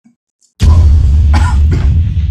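A man coughing hard several times, the first cough about half a second in, loud and overloading with a deep rumble beneath: a coughing fit from the heat of an extremely spicy chicken wing.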